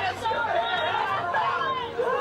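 Several people laughing together.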